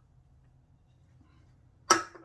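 Quiet room tone, broken near the end by one sudden, short, loud sound that trails off quickly.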